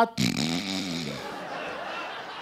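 A man makes a short comic vocal noise into a microphone during the first second, then a congregation laughs, a steady wash of laughter that slowly dies down.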